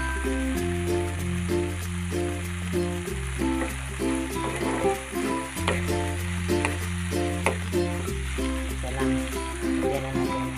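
Background music with a bass note changing about every two and a half seconds, over the steady sizzle of coconut and shrimp frying in a pan. A few sharp ticks come from a spatula stirring against the pan.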